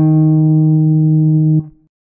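Acoustic guitar's closing note ringing out, held steady for about a second and a half, then cut off abruptly.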